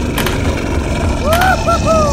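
A steady low rumble, with three short rising-and-falling vocal cries in the second half.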